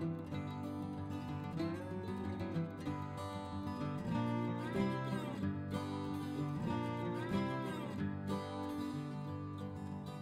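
Background music: an upbeat country-folk track led by acoustic guitar, with two sliding notes in the middle stretch.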